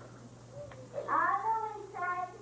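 A child's voice over the stage microphones, starting about a second in with one drawn-out note that rises and then falls in pitch, leading into a children's song.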